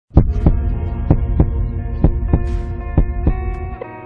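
A slow heartbeat-like double thump, about one pair of beats a second, over a steady droning chord; the low thumping drops away near the end.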